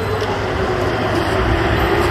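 A motor running steadily: an even mechanical drone with a constant hum, no revving.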